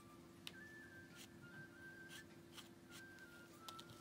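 Near silence: a faint background music melody over a low hum, with a few light clicks and taps from a fabric marker and ruler on cotton cloth.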